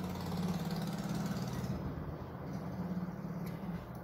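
A steady, low engine hum in the background, which stops shortly before the end.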